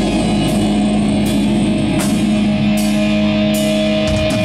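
Doom metal band playing live: held guitar chords over drums, with a cymbal crash about every three-quarters of a second.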